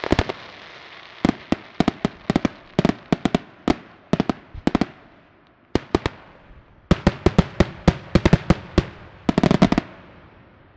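Aerial firework shells bursting in quick volleys of sharp bangs. A fading crackle opens the stretch, there is a short lull about five seconds in, and a dense run of reports comes near the end.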